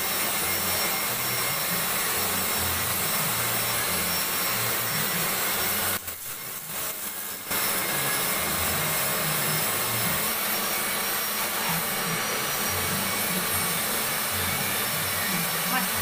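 Steady whooshing machine noise with a few faint high tones. It drops out for about a second and a half partway through, then returns unchanged.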